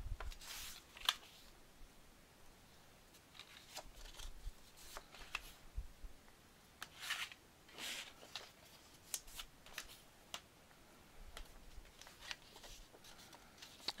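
Kraft cardstock being folded along its score lines and creased with a bone folder: faint, scattered paper rustles and scraping strokes with light taps on the table.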